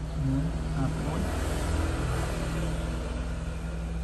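A passing motor vehicle: a rushing sound that swells to a peak about midway and then fades, over a steady low hum.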